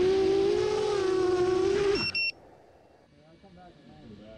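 FPV racing quadcopter's motors whining at a steady pitch, then spinning down with a quick falling pitch and stopping about two seconds in as the drone comes down onto the grass. Two short high beeps follow.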